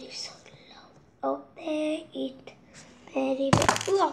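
A child's voice making short wordless sounds, a few times. Near the end comes a loud burst of handling noise as the recording device is moved.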